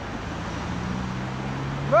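Street traffic: a motor vehicle's engine running as a steady low hum that comes in about half a second in, over a background of road noise.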